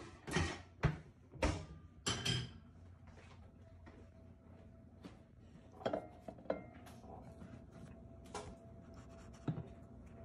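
Kitchen handling sounds on a tiled counter: a quick run of knocks and clatters in the first couple of seconds, then a few scattered light taps of dishes and a bowl being handled.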